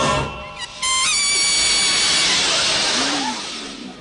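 The sung theme tune stops just after the start. About a second in, a single high, steady horn note sounds. A loud hiss then swells up and slowly fades over the next two to three seconds: the closing comedy gag of the opening.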